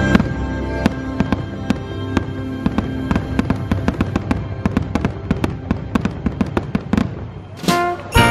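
Fireworks going off in a rapid run of sharp cracks and pops, a few every second, with a louder burst near the end.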